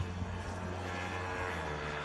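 Steady low background hum with a faint even hiss, holding level throughout.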